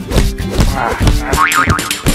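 Cartoon background music with a springy pogo-stick boing effect, a quick rising and falling wobble in pitch, about a second and a half in.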